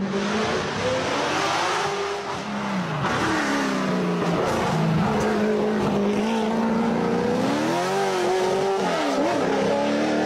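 Mid-engined Ford V8 of a De Tomaso sports car driven hard through tight bends, its note falling about three seconds in and climbing again near eight seconds as the revs change.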